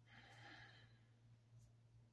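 Near silence over a steady low hum, with one faint breathy exhale like a sigh starting just after the beginning and fading out about a second in.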